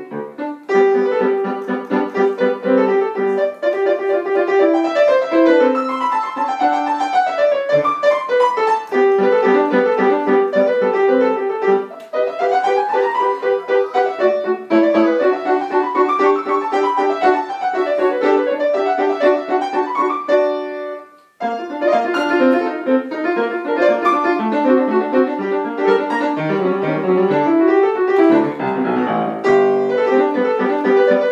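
Grand piano played solo at a fast tempo in a classical piece, with quick running scales up and down the keyboard. The playing breaks off for a moment about two-thirds of the way through, then goes on.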